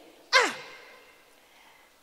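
A woman's single sharp "ah!" exclamation into a microphone, sliding steeply from high pitch down to low and dying away within about a second.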